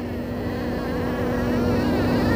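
Hand-held scintillometer's audio signal buzzing and growing steadily louder as its count rate rises, held near a radioactive pebble of uranium ore in the glacial till.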